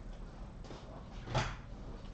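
Room noise in a hall with one short dull knock about one and a half seconds in.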